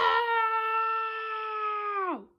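A person's long, drawn-out cry of "Nooo!" held on one steady pitch, sagging slightly in pitch near the end.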